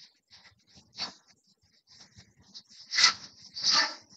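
An animal's breathing: a series of short, breathy sounds, the two loudest near the end, under a second apart.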